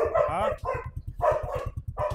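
A small dog barking several times in quick succession.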